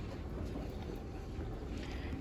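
Steady low rumble of store background noise mixed with handling noise on a hand-held phone microphone as it is carried along.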